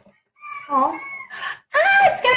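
A woman's high-pitched, wordless excited vocalising, sliding in pitch, with a short breath in the middle and a higher squeal-like exclamation near the end.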